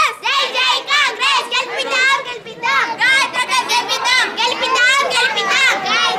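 A group of children shouting slogans together in high-pitched, overlapping voices, each phrase rising and falling in pitch and repeated over and over.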